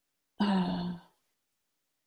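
Speech only: a woman's drawn-out hesitation "euh", held on one steady pitch for about half a second.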